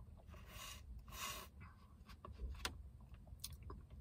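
Faint mouth sounds of a slushie being sipped through a straw: two short slurping hisses within the first second and a half, then scattered small clicks of the lips and mouth.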